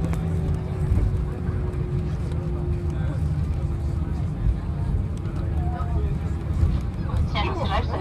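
Cabin noise of a jet airliner rolling along the runway just after landing: a deep steady rumble from the wheels and engines with a steady hum over it. A cabin PA announcement starts near the end.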